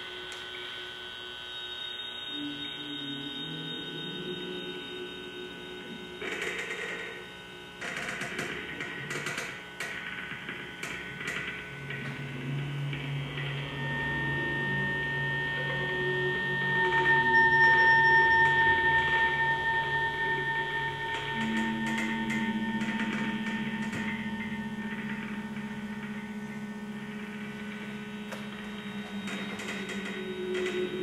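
Improvised electronic drone music: layered steady humming tones that change pitch in steps. A high whistling tone comes in about halfway through and swells to the loudest point a few seconds later, and a few sharp clicks sound in the first third.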